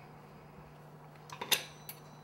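Quiet room with a steady low hum, then a few light, sharp clicks about a second and a half in as small tools and a small bottle are handled on a kitchen countertop.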